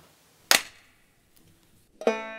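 A single sharp hand clap about half a second in, given on a 'three two one' count as a sync clap to line up separately recorded parts.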